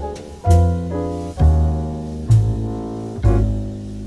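Slow jazz ballad backing track on double bass and piano, with a new bass note and chord about once a second, each dying away before the next. It plays the changes DbMaj7–Ddim7 moving into Ebm7–Ab7.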